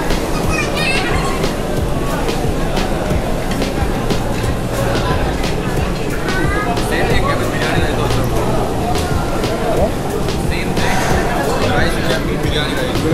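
Busy restaurant din: background chatter of many diners over music, with frequent short clinks of cutlery and crockery.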